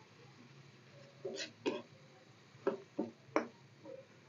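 Metal spatula scraping and knocking against a kadai while thick masala is stirred: a few short, faint scrapes and taps, spread from about a second in to the end.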